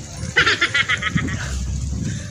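A person's high-pitched giggle, a quick run of short bursts lasting under a second, over a low rumble of wind on the microphone.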